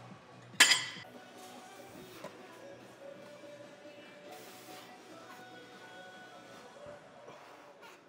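One sharp metallic clank of gym weights about half a second in, ringing briefly, over steady background music in the gym.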